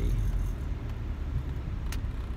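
Steady low rumble of a car's engine and tyres heard from inside the cabin while driving, with a single short click near the end.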